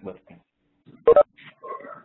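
A man's voice speaking a few words over a narrow-band conference line, with short pauses between them.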